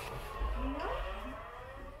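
Electric fire siren wailing, its tone gliding slowly upward: the alarm that calls volunteer firefighters out to an emergency.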